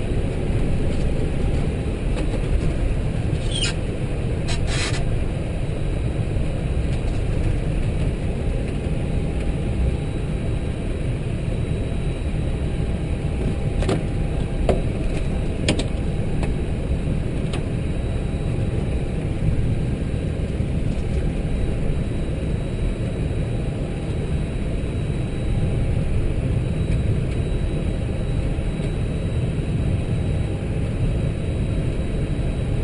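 Steady low rumble and hiss inside an Airbus A320 cockpit as the airliner taxis, with a few brief clicks and a short squeak early on and again in the middle.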